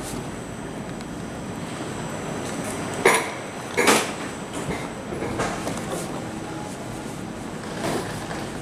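Station platform ambience beside a Nightjet sleeper train under a large station roof: a steady rumble with a faint high whine. Two loud clanks come about three and four seconds in, followed by a few softer knocks.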